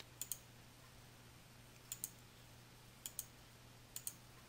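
Faint, sharp clicks of a computer mouse or keys: three close pairs spaced about a second apart and one single click near the end, over a faint steady low hum.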